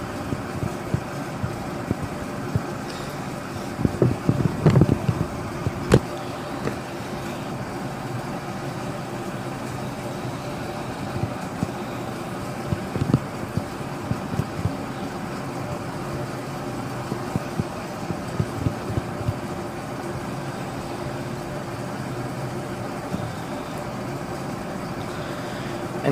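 Steady background hum, with a few short louder bursts about four to five seconds in and again later, and one sharp click about six seconds in.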